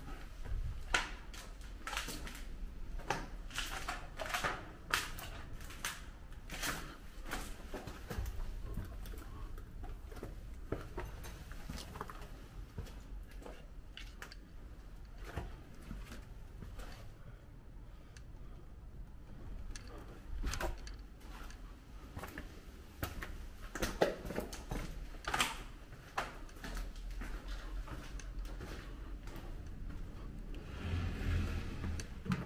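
Footsteps crunching and scuffing over fallen plaster and debris on a hard floor, an irregular run of short clicks and crunches with a few sharper knocks, in a reverberant empty building.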